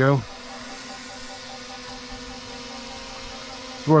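DJI Mini 3 Pro quadcopter drone hovering low, its propellers making a steady hum.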